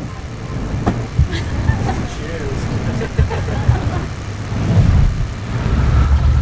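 Indistinct voices over a steady low rumble, with a couple of short knocks about a second in.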